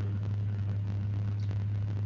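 Steady low electrical hum with faint hiss on a video call's audio line, heard while a microphone connection is failing.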